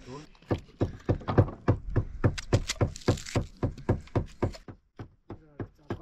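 Quick, even knife-chopping strokes, about five a second, with a short pause near the end.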